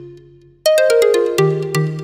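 Electronic background music: a held synth chord fading away, then, about half a second in, a quick run of short, sharp synth notes stepping down in pitch and ringing out.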